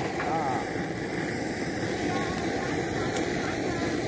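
A steady, even engine drone that runs without a break, with a single short spoken word at the very start.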